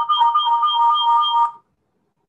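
A short electronic tune: a quick repeating two-note figure that swells up and then cuts off suddenly about a second and a half in.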